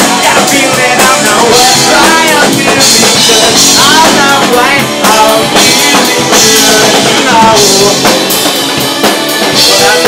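Live rock band playing loud: drum kit with a cymbal splash about every second and a half, electric guitar and bass, and sliding melodic lines over the top.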